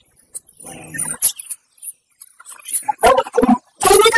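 Small plastic craft embellishments being tipped out of a little plastic pot into a hand, with a few light clicks and rattles, and a short murmured voice twice.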